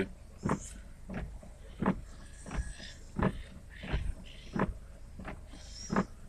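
Windscreen wipers sweeping across a rain-wet windscreen on a fast setting, each stroke making a short rubbing sound about every 0.7 seconds, over a faint low hum.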